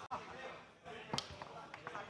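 Foosball in play: the ball being struck by the table's men and knocking against the table, a loud sharp clack just over a second in, followed by a few lighter knocks.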